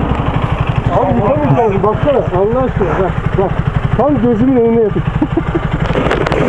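Single-cylinder engine of a Bajaj Pulsar NS 200 motorcycle idling with a steady, even low pulse, a voice talking over it in the middle.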